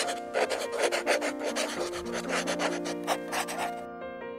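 A pen-scratching writing sound effect: quick rasping strokes that stop abruptly just before the end, over soft piano music.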